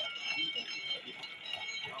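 Busy outdoor market ambience: scattered crowd voices and chatter, over a steady high-pitched whine.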